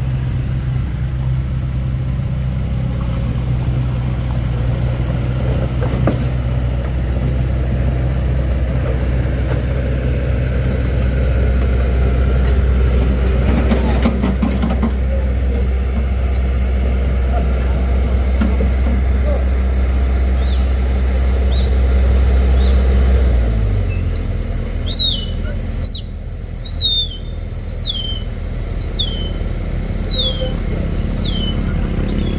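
A vehicle engine idling steadily, its low hum dropping in pitch a little past three-quarters of the way through. Over the last few seconds a bird calls again and again, a quick string of short falling chirps.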